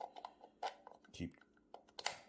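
AAA batteries being handled and fitted into a small plastic battery compartment: a few light clicks and taps, with a sharper click near the end.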